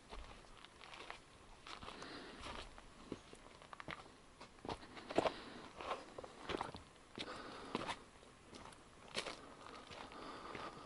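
Footsteps of a hiker on a dry dirt forest trail scattered with leaves and needles: a series of faint, irregular footfalls at a walking pace.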